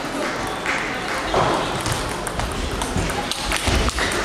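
Table tennis rally: the celluloid ball clicks sharply off rackets and table in quick succession, over a background of voices in a large sports hall.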